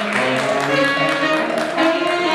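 A live band of saxophones and trumpets playing a tune with sustained notes over a steady beat.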